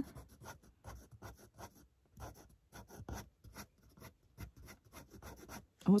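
Fine-tip Graphik Line Maker 0.3 pen scratching on paper in many short, quick strokes, darkening the shading of a drawing.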